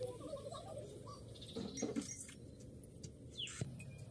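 Faint chirps and squeaks of small animals. A quick high squeak falls steeply in pitch near the end, and there is a short scuffle about a second and a half in.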